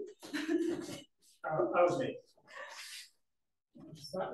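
Indistinct murmured voices in three short bursts, then a brief hush near the end.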